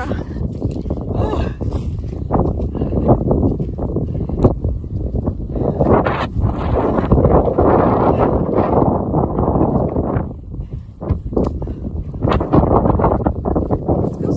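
Wind buffeting a phone's microphone: a loud, low noise that surges and eases in gusts and drops away for a moment about ten seconds in.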